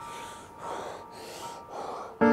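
A man gasping in distress, several sharp breaths in quick succession, over soft sustained piano music.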